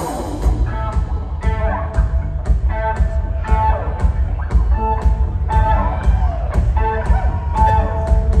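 Live rock band playing: an electric guitar plays a lead with bent notes over bass and drums, the drums hitting about twice a second.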